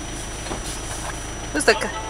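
Car engine idling with a steady low rumble, heard from inside the car's cabin; a voice calls out briefly near the end.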